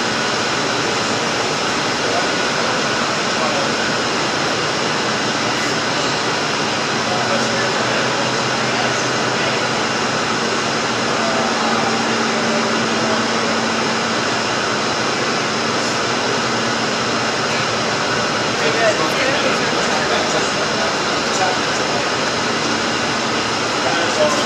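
Steady machinery hum in a brewery tank cellar: an even rushing noise with several fixed tones, like ventilation and refrigeration running, with a group of people talking faintly underneath.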